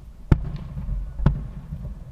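Aerial fireworks booming: two sharp bangs about a second apart, the first the louder, over a low rumble.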